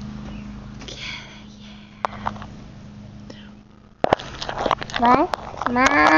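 A phone's microphone knocked and rubbed as the phone is handled: a sharp knock about four seconds in, then rustling and clicks. Before that there is only a steady low hum with a few faint breathy sounds, and a voice comes in near the end.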